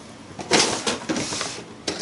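Paper rustling as a taped card is slid and turned on a journal page: about a second of rustle starting half a second in, with a few light taps near the end.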